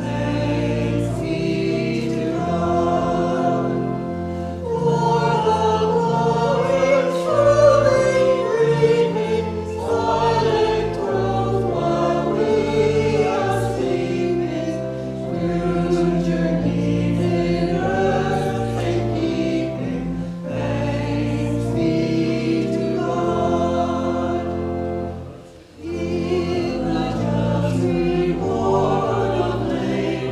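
Church choir singing a hymn in parts, phrase after phrase of held chords, with a brief pause about five seconds before the end.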